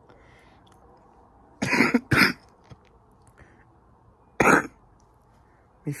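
A man coughing: two quick coughs about two seconds in, then a single cough a couple of seconds later.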